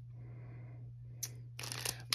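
Foil trading-card pack crinkling as it is handled and turned over: a short crackle about a second in, then a louder rustle near the end. A faint steady hum lies under it.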